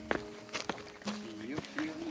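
Footsteps on rocky ground with patches of snow, a few sharp steps. About halfway through, a person's voice holds a wavering note over faint music.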